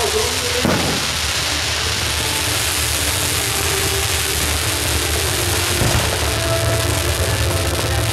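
Ground fountain fireworks spraying sparks, a steady even hiss, over a low steady rumble.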